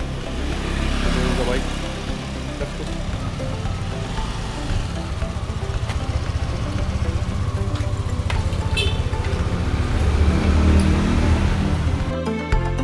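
A motor scooter's engine running close by, steady and low, under background music, with a few sharp clicks near the end.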